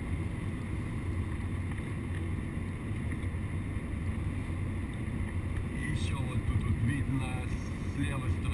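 Steady low rumble of engine and tyre noise inside a Mercedes-Benz car's cabin at highway speed.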